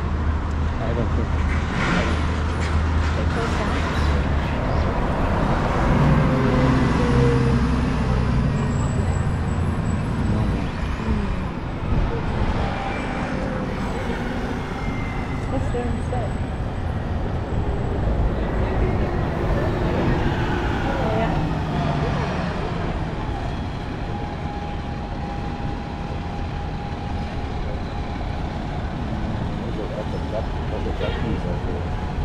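Busy city street traffic: cars and buses passing with a steady rumble of engines and tyres, with slow rises and falls in engine pitch as vehicles pull away.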